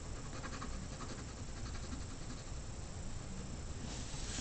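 Faint graphite pencil strokes scratching on drawing paper: a quick run of short strokes in the first second and a half, then softer, even shading.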